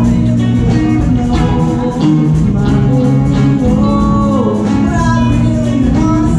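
A song performed live: a solo singer holding long, gliding notes over guitar accompaniment.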